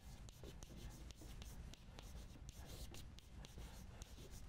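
Chalk writing on a blackboard: a faint, quick run of short scratches and taps as the words are written out.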